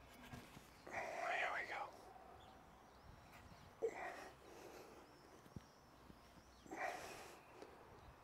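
A man's short, breathy exhalations of effort, twice, about four and seven seconds in, against a quiet background.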